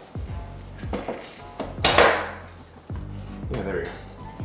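Light clicks and knocks of a picture frame and its backing being handled on a table, with one louder short rush of noise about two seconds in, over background music.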